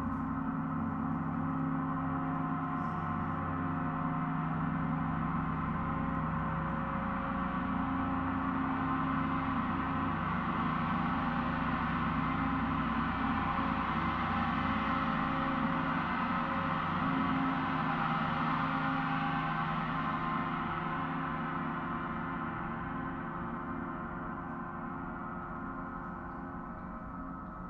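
Large Paiste gong played continuously with a soft felt mallet, giving a dense wash of many overlapping tones. It swells slowly to its loudest about two-thirds of the way in, then gradually dies away near the end.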